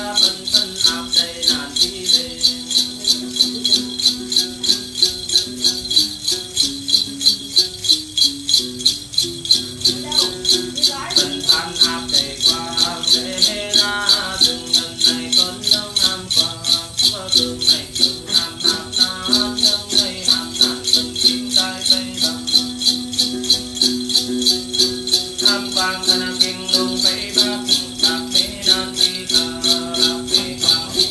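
Then ritual music: a chùm xóc nhạc, a cluster of small metal jingle bells on strings, shaken in a steady pulse of about two to three shakes a second. It plays along with a plucked đàn tính lute and a man singing.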